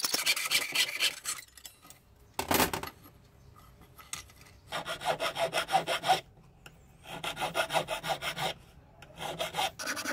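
Flat hand file being stroked back and forth across the edge of a 95% silver tube, in three bursts of quick strokes with short pauses between. Before that, quick strokes of a jeweler's saw cutting silver sheet, and a single knock about two and a half seconds in.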